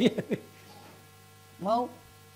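Faint, steady electrical mains hum from the microphone and sound system, with the tail of a man's word at the start and one short spoken syllable about one and a half seconds in.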